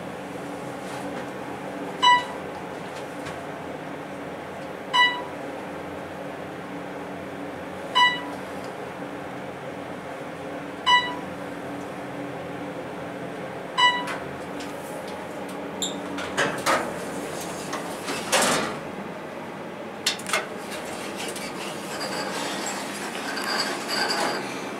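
Dover traction elevator with an Otis modernization riding up, with a steady hum in the cab. A short electronic beep sounds as it passes each floor, about every three seconds, five times in all. After the beeps come a few knocks and a brief rush of noise as the car arrives and the doors work.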